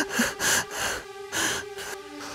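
A man's short, gasping sobbing breaths, about six in quick succession, as he is overcome with emotion.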